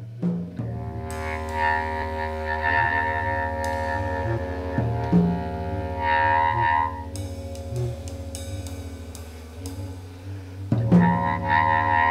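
Jazz ensemble music: a low sustained bass drone under held string and horn tones, with scattered drum and cymbal strokes. The ensemble swells about halfway through and again near the end.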